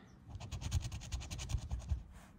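A scratch-off lottery ticket being scratched with rapid, even back-and-forth strokes that scrape the coating off a bonus spot to uncover a symbol. The scratching starts a moment in, after a brief pause.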